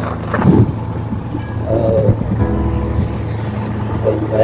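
Steady low hum of a vehicle driving along a road, with music playing over it.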